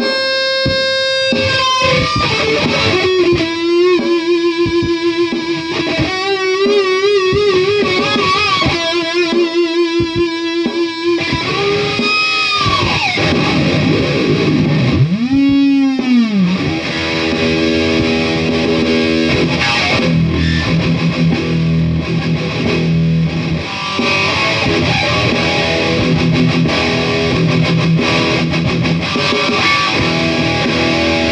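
Dean ML electric guitar played through a distorted Marshall Code 50 amp: long held lead notes with wide vibrato, two big swooping bends up and back down around the middle, then faster, busier riffing.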